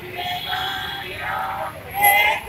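Raised voices chanting in a sing-song pitch.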